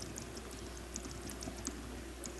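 Faint, irregular light clicking, several clicks a second, over a steady low electrical hum.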